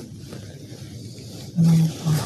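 A person's short, closed-mouth "hmm", a steady low hum, near the end, after a stretch of faint room hiss.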